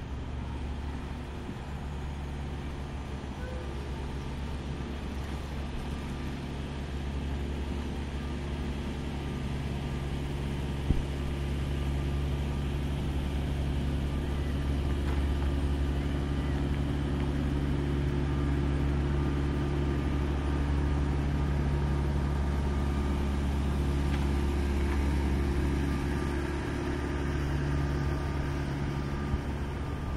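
Steady low rumble of distant road traffic, swelling gradually in the middle and easing near the end.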